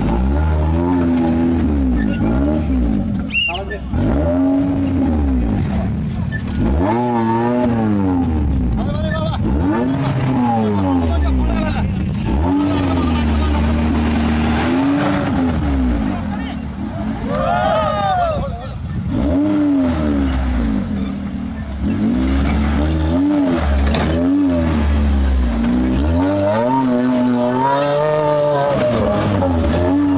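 Modified Maruti Suzuki Gypsy's engine revving hard and dropping back again and again, its pitch rising and falling every second or two as the wheels spin and claw through loose dirt.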